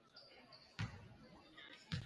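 A basketball bounced twice on a hardwood gym floor, about a second apart, as a player dribbles at the free-throw line before shooting.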